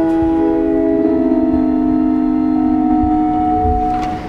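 Organ playing slow, sustained chords in a quiet, meditative passage. The held notes shift every second or two, and the phrase closes right at the end.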